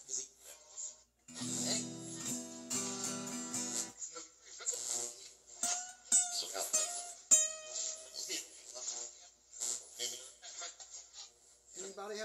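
Ghost-box app played through a small amplifier speaker: a strummed guitar chord that starts and cuts off abruptly after about two and a half seconds, then a string of short, choppy voice and sound fragments with a sharp plucked note near the middle.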